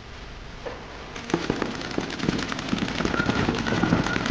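Several paintball markers firing rapid strings of shots. The shots start about a second in and pile up into a dense, continuous run of pops that grows louder.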